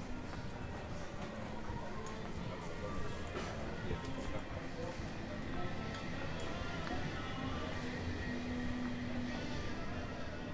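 Street ambience: faint music with voices of passers-by, and footsteps on stone paving.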